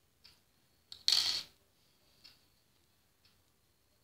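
A short rustle-scrape of stretchy fabric being worked over a thin metal elastic threader, about a second in, as a sewn strip is turned right side out by hand. Faint, regular ticks about once a second run beneath it.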